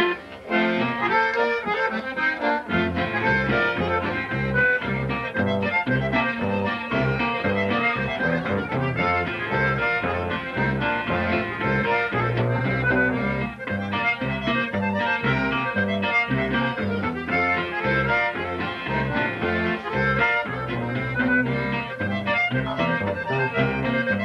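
A conjunto polka played live on accordion with bajo sexto and electric bass. The bass notes come in about two and a half seconds in under the accordion melody.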